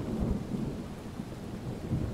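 Steady rain with a low rumble of thunder.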